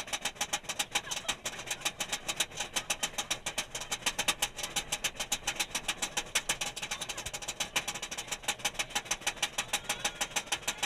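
Roller coaster train climbing a chain lift hill, its anti-rollback ratchet clacking fast and evenly, about seven or eight clacks a second.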